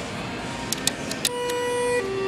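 A few sharp clicks, then an elevator's electronic arrival chime: a steady note starting a little past halfway through, dropping to a lower note at the end.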